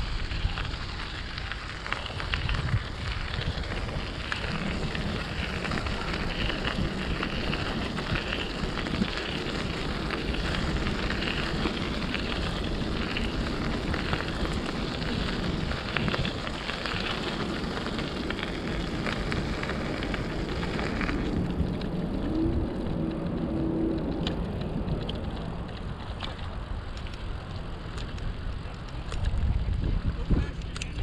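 Bicycle rolling along a trail: a steady crackling tyre noise mixed with wind on the microphone. The crackle becomes duller about two-thirds of the way through.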